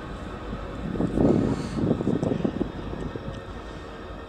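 Steady low rumble of wind on the microphone. About a second in comes a patch of soft rustling and thumps lasting about a second and a half.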